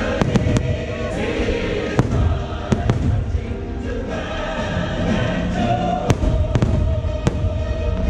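Fireworks shells going off in a string of sharp bangs, several in the first second, more around two to three seconds in and again around six to seven seconds in. They sound over the show's loud music soundtrack, which has a choir singing.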